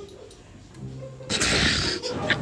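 A man's short low hum, then a loud breathy laugh lasting under a second.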